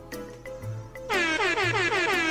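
Soft children's background music with a low beat, then, about a second in, a loud horn-like sound effect whose pitch slides downward over and over.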